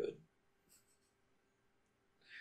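The tail of a spoken word, then a pause of near quiet: faint room tone with a faint steady electrical hum.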